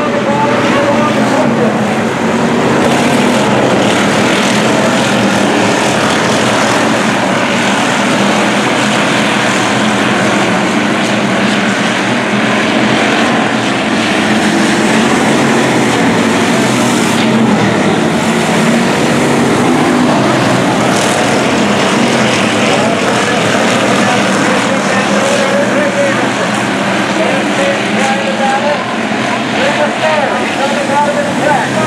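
A pack of hobby stock race cars running laps on a dirt oval, their engines loud and overlapping, the pitch rising and falling as cars accelerate off the turns and pass by.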